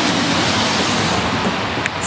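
Heavy rain falling hard, a dense steady hiss, with a few faint ticks near the end.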